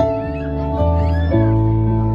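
Keyboard and electric bass playing slow, sustained chords in a song's instrumental outro, the bass moving to a new note about a second and a half in. A faint high gliding vocal sound sits over the chords in the first second.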